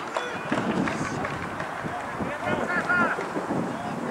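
Distant, indistinct shouting from players across an open football pitch, with wind buffeting the microphone.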